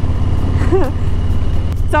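Harley-Davidson Low Rider S's Milwaukee-Eight 114 V-twin running steadily under way through a Vance & Hines Big Radius exhaust, a loud, even low rumble.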